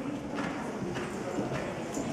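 Horses' hoofbeats on the footing of an indoor riding arena, a few strikes about half a second apart, under indistinct talking.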